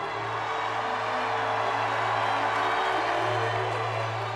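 A large crowd cheering and clapping, swelling over the first second or two and then holding steady, over held tones of background music.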